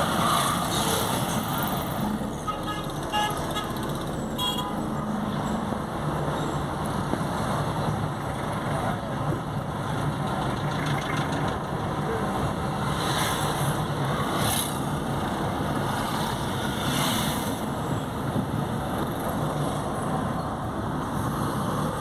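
Steady road-traffic and engine noise heard from inside a moving car in slow traffic, with a couple of short horn toots a few seconds in.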